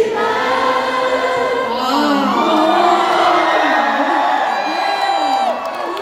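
Several voices singing together in a slow melody, with crowd sound underneath. A long held note ends about five and a half seconds in.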